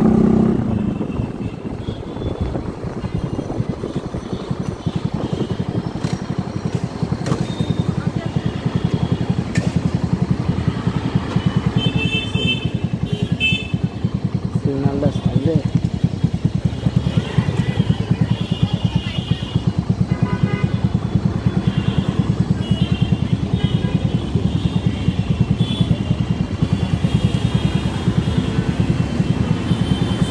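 Single-cylinder engine of a Bajaj Pulsar NS160 motorcycle running at low speed in stop-and-go city traffic, with a steady rapid firing beat. It eases off about a second in.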